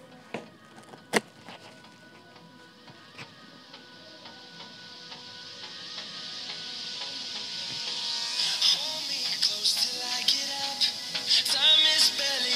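A song playing through a Philips TAT4205 true-wireless earbud, picked up by a lavalier mic held against it: it starts quiet and swells steadily, with a beat coming in about eight seconds in. Two sharp handling knocks on the mic about a second in.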